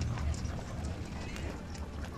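Faint background of scattered light clicks and knocks over a low steady hum.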